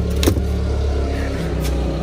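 Steady low hum of running machinery, with two light metallic clinks, one near the start and one past the middle, as cast-iron brake rotors are handled on a metal workbench.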